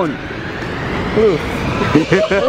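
Street traffic noise: the steady rush of a passing vehicle, growing a little louder, with a faint voice under it.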